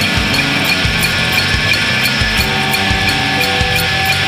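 Rock band recording playing an instrumental passage: guitars holding sustained chords over drums with a steady cymbal beat of about three hits a second, no vocals.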